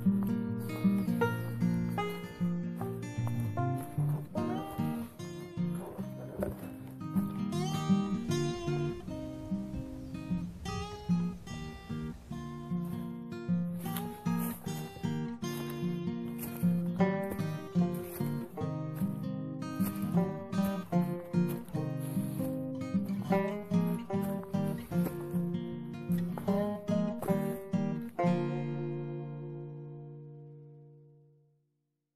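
Background music of plucked acoustic guitar playing a quick run of notes, ending on a chord that rings on and fades out near the end.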